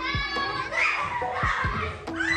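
Young children's voices calling out and playing, with a few short low thuds.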